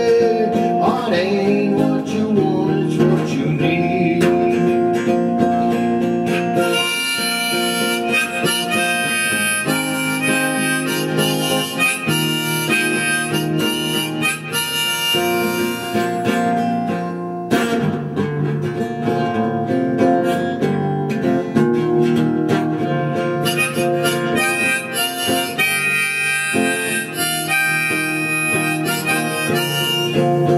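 Harmonica playing a solo line of held notes over acoustic guitar accompaniment, an instrumental break with no singing.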